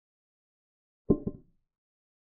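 Chess program's piece-capture sound effect: two quick knocks a fraction of a second apart, like a wooden piece set down on a board, as a pawn takes a bishop.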